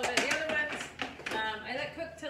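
Voices talking, with a few light knocks as a metal baking sheet of cookies is set down on a stovetop.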